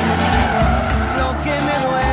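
Tires squealing as lowered pickup trucks slide sideways on pavement, the pitch wavering, over background music with a steady bass line.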